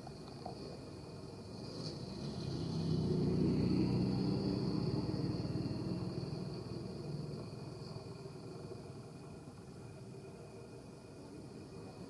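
A low rumble that swells over a couple of seconds, holds, then slowly fades, over a steady high insect drone.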